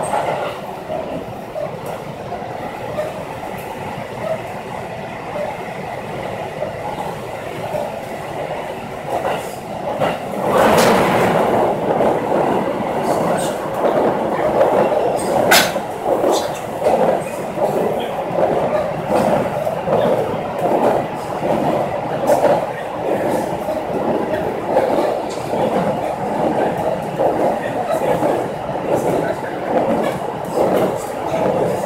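Passenger train running, heard from inside the carriage: a steady rumble of wheels on the rails. About ten seconds in it turns louder, with a regular pulsing clatter, as the train goes out over a long bridge across wide water.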